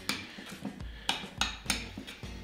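A metal spoon clinking against ceramic bowls while ingredients are stirred: several separate sharp clinks.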